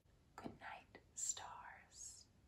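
A woman whispering a few soft words in two short breathy phrases.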